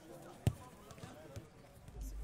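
A football being kicked: one sharp thud about half a second in and a softer touch a second later, with faint chatter of players behind.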